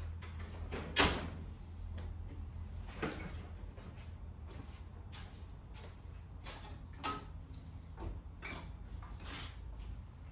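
Scattered knocks and clatters of objects being handled and moved about, as if someone is rummaging through shop shelves or cabinets; the loudest knock comes about a second in, with several lighter ones after. A low steady hum runs underneath.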